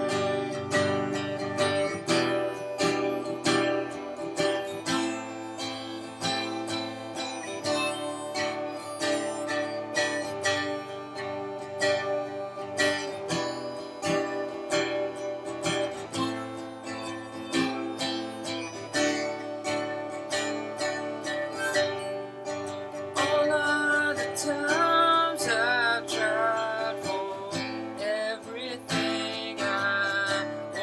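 Acoustic guitar strummed in a steady rhythm with a harmonica playing over it, the instrumental opening of a song. Some held notes waver in pitch in the second half.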